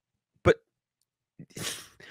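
A man's voice says a single short 'but', followed about a second later by a brief breathy rush of air, a quick breath or stifled laugh.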